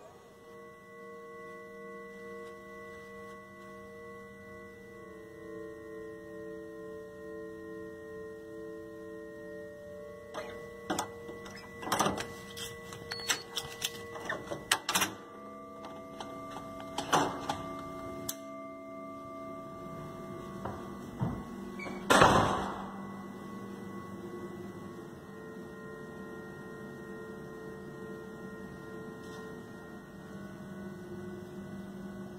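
A steady hum of several tones that steps to new pitches about ten and twenty seconds in. It is broken by clicks and knocks in the middle and by one loud thump a little after twenty seconds.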